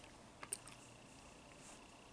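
Near silence: room tone, with two faint short clicks about half a second in.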